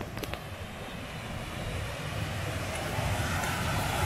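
A mountain waterfall rushing over granite in a steady roar of falling water, slowly growing louder.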